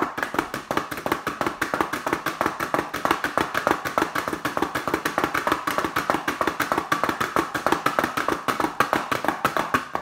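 Homemade pellet drum made of two paper plates on a wooden spoon handle, twirled back and forth between the palms so two balls of foil on strings beat on the plates. It makes a fast, even rattle of taps, many a second, really good and loud.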